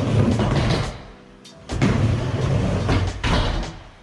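Skateboard wheels rolling on a plywood mini ramp: a low rumble that drops away for under a second near the middle and comes back with a knock of the board, with more clacks of the board before it goes quiet near the end.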